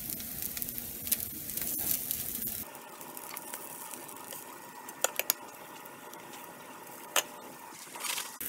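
Potato pancakes sizzling in butter in a hot pan, with a steady crackle. A few sharp clicks come in the second half as a utensil works in the pan.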